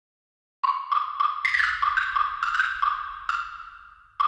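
Channel logo jingle: a short melody of about nine single, high, percussive notes. It begins after half a second of silence and dies away near the end.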